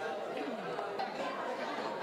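Background chatter of many people talking at once in a large room, with no single voice standing out.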